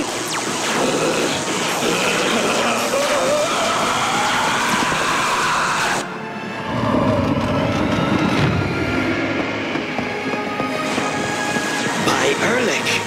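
Cartoon soundtrack of music mixed with magic sound effects. A sweep rises over the first half, and about halfway through the sound changes abruptly to a low rushing whoosh of wind under the music.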